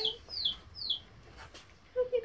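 Baby chicks peeping: two high, short peeps that slide downward in pitch, one after the other in the first second.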